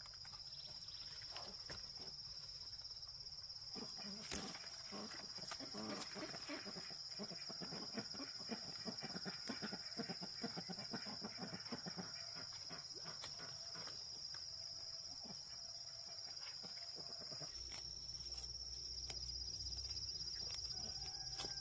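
Farm animals calling against a steady high-pitched drone, with scattered clicks and leaf rustle from hands picking leafy greens.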